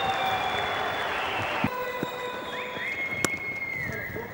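Crowd applauding, with several long steady pitched tones held over the clapping. The sound changes abruptly under two seconds in, and a single sharp knock comes about three seconds in.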